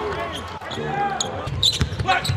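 Basketball being dribbled on a hardwood court, with voices underneath.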